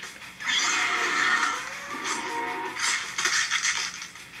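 Soundtrack of an animated dinosaur fight: music with loud, animal-like creature calls. One starts suddenly about half a second in, and another comes near the end.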